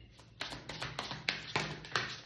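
A deck of tarot cards being shuffled by hand, the cards tapping and slapping together in quick strokes about four a second, starting about half a second in.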